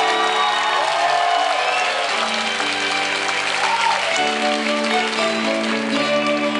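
Live acoustic band playing, with acoustic guitars and sustained chords, while the audience cheers and claps.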